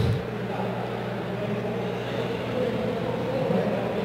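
Steady low hum and room noise, with no distinct mechanical events.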